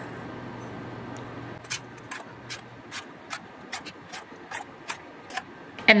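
Metal scoop clinking against a bowl and pan while whisked egg mixture is ladled into muffin cups: a string of short, light clicks, irregular, several a second, starting about a second and a half in. A faint steady low hum comes before the clicks.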